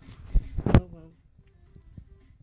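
Two sudden thumps about half a second apart, typical of a handheld phone microphone being knocked or handled, followed by faint short tones.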